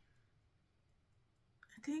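Near silence with faint room tone, then a woman starts speaking near the end, a small click just before her first words.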